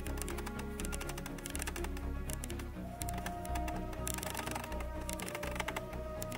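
Rapid clicking as the aperture of a standard, clicked Sigma 18-35 lens is stepped through its stops, about one click per stop, over background music.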